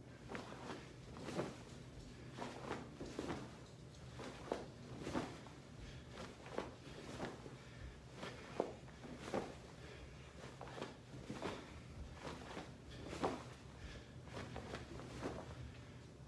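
Soft swishes and thumps of a person's arms, uniform and feet during a martial-arts blocking and punching drill, at a steady rhythm of about three strokes every two seconds.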